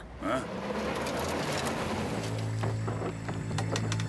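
Cartoon sound effects of a jeep's engine running as it rolls onto a wooden plank bridge, with a run of clacks from about two and a half seconds in. A low drone of tense music comes in under it.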